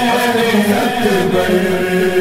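A male voice chants a noha, a Shia mourning lament, drawing out its words in long held notes.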